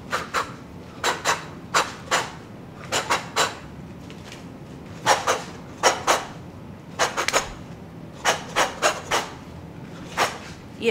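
A person shadowboxing, puffing a short, sharp hissing breath out with each punch: about twenty of them in quick pairs and threes, with brief pauses between the combinations.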